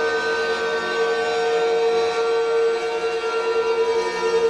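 Guitar-based ambient space music: a slow drone of several held, layered tones with no struck notes, one mid-pitched tone standing out above the rest.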